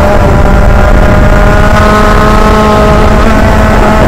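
Senior Rotax Max 125 kart's single-cylinder two-stroke engine running hard at high revs, heard from the driver's helmet; its pitch holds fairly steady with slight rises and dips.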